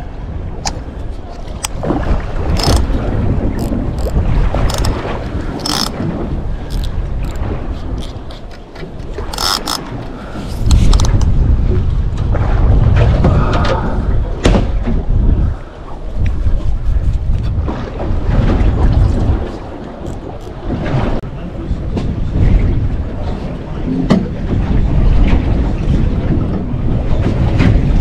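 Wind buffeting the microphone on a small boat at sea, coming in heavy gusts from about a third of the way in, with water against the hull and scattered sharp clicks and knocks of fishing tackle being handled.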